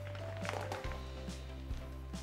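Background music with a steady low bass line that changes note just under a second in. Under it are a few faint clicks and rustles from a collapsible umbrella-type strip softbox being folded shut.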